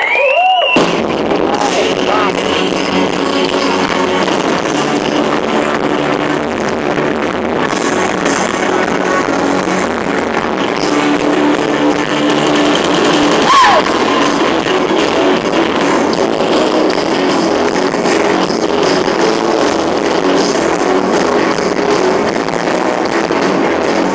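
Live gospel band playing loud, continuous rock-style music through a concert sound system.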